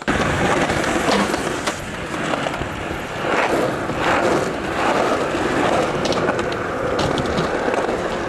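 Skateboard wheels rolling over rough concrete: a steady, gritty rumble with a few sharp clicks along the way.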